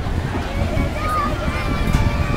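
Wind rushing over the microphone as the chain swing ride swings through the air, a steady low rumble, with faint voices in the background.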